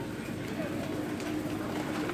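Supermarket background: a steady low hum with faint, indistinct voices of other shoppers.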